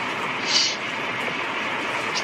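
Steady background noise, unbroken through the pause, with a short hiss about half a second in.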